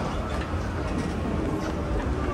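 Steady low rumble with an even hiss of background noise while riding an airport escalator, with faint chatter of travellers in the big hall.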